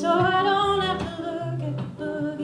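A woman singing a folk song live, holding one long note through the first second, over a quietly played guitar.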